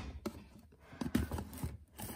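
Light taps and knocks of cardboard boxes being touched and shifted on a pantry shelf, a few small clicks close together.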